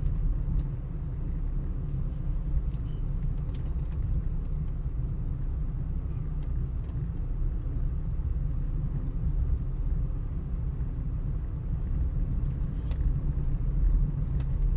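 A car's engine and tyres running at low speed, heard from inside the cabin as a steady low rumble, with a few faint ticks.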